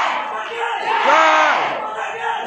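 A crowd of voices shouting together over general crowd noise, with one long drawn-out shout about a second in, rising and then falling in pitch.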